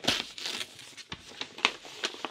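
Paper rustling and crinkling in a run of short crackles as mail is handled and a letter is pulled out, loudest just at the start.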